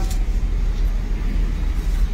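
Steady low rumble with faint background noise, and no other distinct sound.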